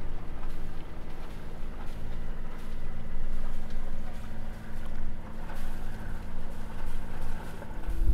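Sailing yacht's inboard engine running steadily with the boat under way: a low, even hum under wind and water noise.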